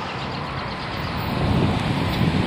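Wind buffeting a camcorder's microphone over a steady outdoor hiss. The low rumble of the buffeting grows stronger about halfway through.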